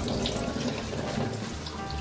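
Tap water running steadily into a stainless steel sink, splashing over a banana being scrubbed with a sponge.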